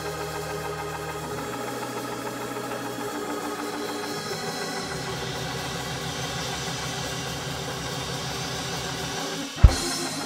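Live church band music under a pause in preaching: sustained keyboard chords over held bass notes that change every second or two, with one sharp hit near the end.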